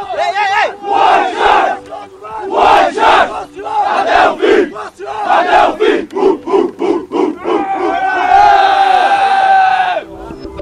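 A football team shouting a chant together in a huddle, the shouts coming faster and faster, then breaking into one long held shout near the end.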